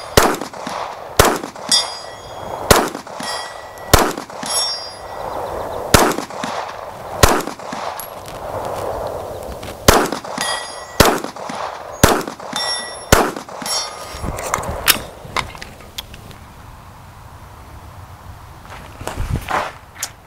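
A slow string of pistol shots, about one a second, many followed by a ringing clang as the hanging steel plates are hit. The shots thin out after about 15 seconds and the last few seconds are quieter.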